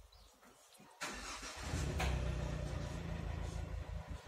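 An engine comes on about a second in and settles into a steady low hum.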